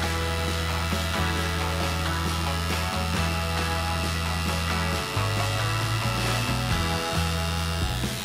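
Tattoo machine buzzing steadily as its needle lines lettering into the skin of a forearm.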